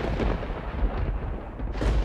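A loud, deep rumble with a noisy hiss over it, swelling again near the end.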